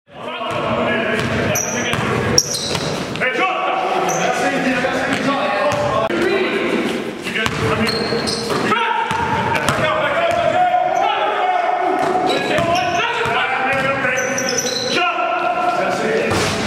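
Basketball game sound in a large gym hall: a ball bouncing on the court, short high sneaker squeaks and players' voices calling out. A sharp bang comes about two seconds in.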